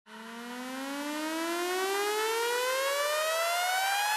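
A synthesized rising sweep, a buzzy electronic tone rich in overtones that fades in and climbs steadily by about two octaves: an intro riser sound effect.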